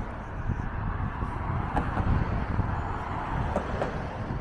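Road traffic on the bridge: cars passing in the lanes beside the walkway, giving a steady low rumble of tyres and engines.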